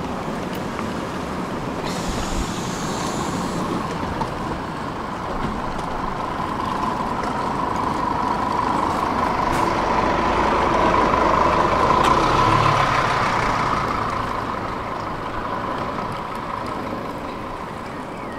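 Bus driving on the road, engine and road noise heard from inside the cabin, building to a peak about twelve seconds in and then easing off. A brief hiss about two seconds in.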